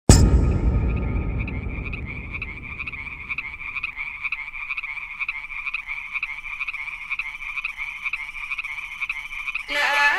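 Added soundtrack opening with a deep boom at the very start that fades over a few seconds. A steady, rapidly pulsing croaking like a frog chorus carries on underneath. Melodic music comes in abruptly near the end.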